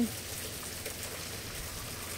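Light rain falling steadily, an even hiss of rain on a wet, flooded street.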